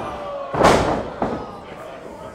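A wrestler's body slamming onto the wrestling ring's canvas about half a second in, a loud booming impact of the ring boards, followed by a lighter thud; crowd voices go up over it.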